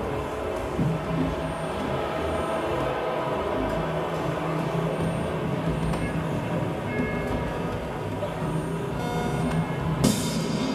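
Live electronic music: a dense, rumbling drone with sustained low bass tones and no clear beat.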